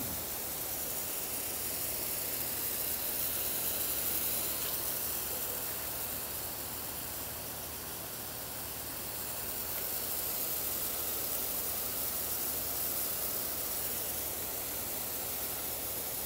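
Pop-up lawn sprinkler spray heads running: a steady hiss of water spray that swells and eases a little.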